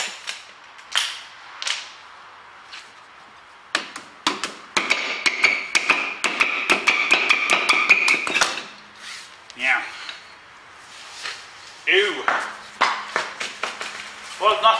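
A run of sharp metallic knocks and rattles as a steel van wheel is worked loose and lifted off its hub. For a few seconds in the middle, a thin steady squeal rides over the knocks.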